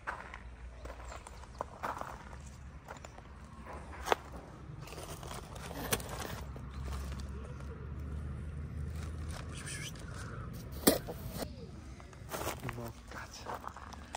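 Footsteps and handling noise on rubble-strewn ground among stacked plastic cement sacks, with a few sharp clicks, the loudest about four and eleven seconds in. A low rumble swells through the middle.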